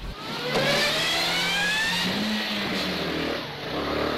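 Motor vehicle engine accelerating, its pitch rising for about a second and a half and then running steadily.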